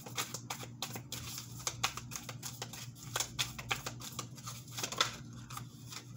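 Tarot deck being shuffled by hand, a quick, irregular run of soft card clicks and flicks.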